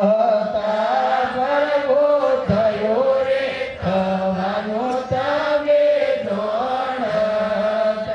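Devotional chanting: a single voice holding long notes and gliding smoothly between pitches, with a few faint knocks underneath.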